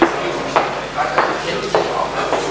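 Footsteps on a hard floor in a large hall, a knock roughly every half second at walking pace, over indistinct background voices.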